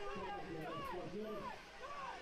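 Voices calling out in the background: a string of short, rising-and-falling shouts, faint and unclear.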